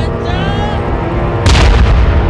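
A sudden loud boom about one and a half seconds in, a dramatic film sound-effect hit, over low, dark background music.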